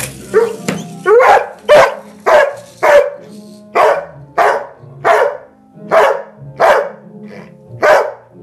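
A dog barking about a dozen times in a fast run, roughly one sharp bark every half second with two brief pauses, over quieter background music.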